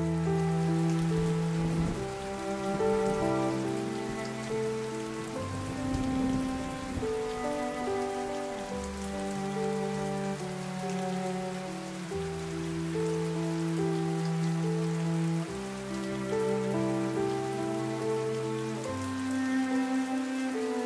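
Slow background music of held string chords that change every three to four seconds, layered over a steady sound of falling rain.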